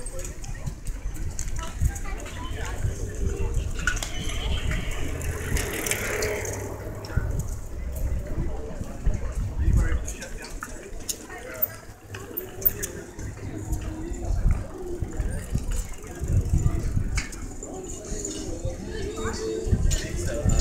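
A group of cyclists riding past, with indistinct talk and calls from the riders and scattered clicks and rattles from the bikes, over a low, fluctuating rumble.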